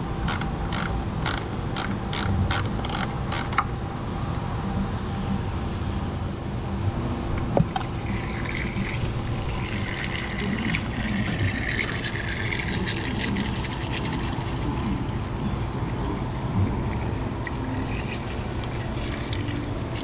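Engine oil pouring in a steady stream from the Cummins diesel's oil pan drain hole into a drain pan. In the first few seconds a quick run of clicks, about three a second, sounds over it.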